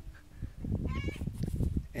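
A brief high animal call, rising in pitch, about a second in, over low rumbling noise.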